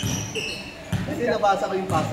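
Basketballs bouncing on a hardwood gym floor, a few sharp thuds echoing in a large hall, with short high squeaks near the start and voices in the second half.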